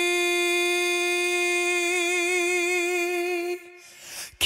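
A pop singer holding one long note over thinned-out backing, the voice steady at first and then wavering in a slow vibrato. The note cuts off about three and a half seconds in, leaving a short, much quieter gap in the song.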